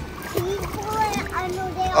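Water splashing as a toddler in a swim vest paddles in a pool, with people's voices over it.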